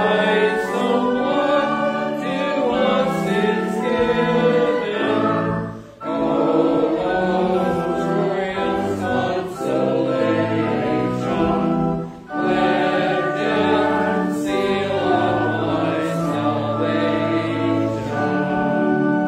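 Voices singing a hymn together with accompaniment, in phrases separated by brief pauses about every six seconds.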